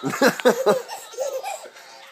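Laughter in a quick run of short bursts through the first second, then a shorter, quieter bout about a second and a half in.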